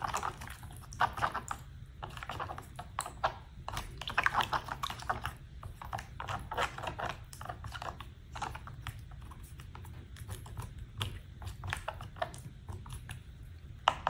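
A wooden stick stirring salt into water in a plastic tub: irregular small clicks and scrapes against the tub, over a faint steady low hum.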